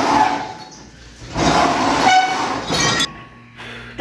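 A heavy wooden kitchen hutch loaded with glasses and dishes is dragged across a floor in two bouts of scraping, with the glassware on its shelves rattling and clinking. The second bout ends in a short squeal about three seconds in.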